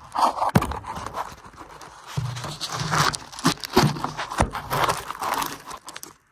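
Irregular knocks, scrapes and rustling as a tyred wheel is worked onto its four hub studs by hand, close to the microphone.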